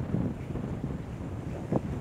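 Wind buffeting the microphone: a steady low rumble, with one short sharp sound near the end.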